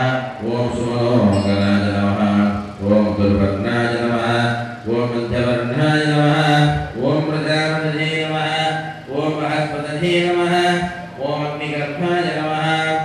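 Male voices chanting Hindu temple mantras during puja: a continuous recitation on held notes that step up and down in pitch, with brief breaks for breath.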